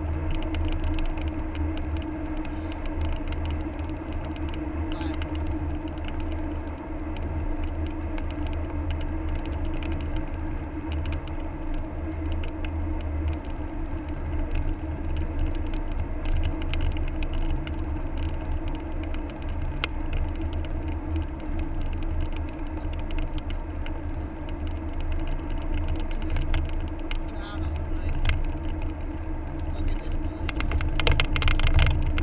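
Car cabin noise while driving at highway speed: a steady low road and engine rumble with a constant hum.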